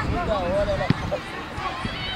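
Overlapping voices of players and onlookers calling out across a football pitch, with one sharp thump about a second in.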